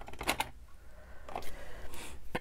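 A few short, sparse clicks and taps from fingers handling a roll of sticky washi tape.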